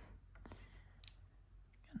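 Near silence with a few faint, short clicks, the clearest about a second in: a plastic-wrapped lollipop being handled in the fingers.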